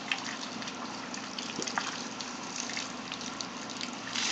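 Water running steadily from a garden hose, a soft even gush with faint scattered splashing ticks.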